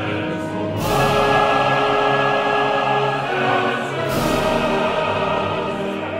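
Bel canto opera: orchestra and chorus singing together, swelling into a loud full-ensemble entry about a second in, with another strong accent about four seconds in.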